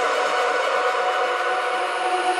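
Electronic house music in a beatless breakdown: held synth chords over a steady hissing noise wash, with no kick drum or bass.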